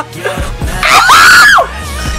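A woman's excited scream: one high shriek held for under a second, about a second in, with the music video's track playing underneath.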